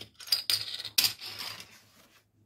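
Round plastic miniature bases clicking and clattering against each other and on a cutting mat as they are handled and set down apart, a few sharp clicks in quick succession.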